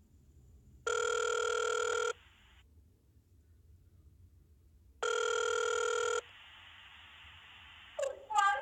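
Telephone ringback tone heard over a speakerphone call, two rings about four seconds apart, each a little over a second long: the call is ringing through to the store after the automated message.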